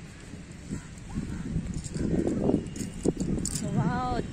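Wind buffeting the phone's microphone: a steady low rumble that swells into louder, uneven gusts about halfway through.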